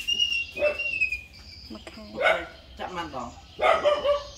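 A dog barking: two short barks, about two seconds in and again near the end.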